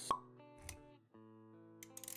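Intro music of soft held notes, with a sharp pop just after the start and a short low swoosh a little after half a second. The notes cut out briefly, then return with a few quick clicks near the end.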